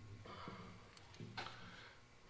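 Two faint, short vocal sounds from a man, about a quarter-second and about a second and a quarter in, over quiet shop room tone.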